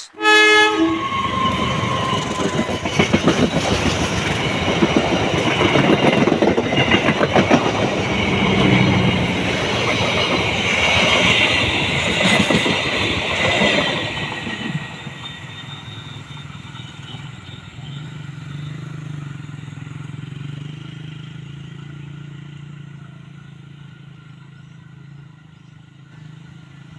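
Diesel-electric locomotive and its passenger coaches passing close by, the wheels clattering over the rail joints. The sound fades steadily over the last dozen seconds as the train draws away.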